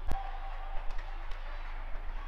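Badminton hall between points: one sharp knock just after the start, trailed by a short ringing tone of about half a second, then a few faint clicks over a steady low hum.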